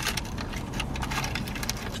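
Faint crackles and clicks of a bite into a flaky fried pie crust and its paper wrapper, over a low, steady rumble inside the car.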